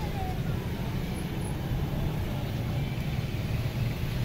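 Steady road traffic noise, a low rumble of passing vehicles.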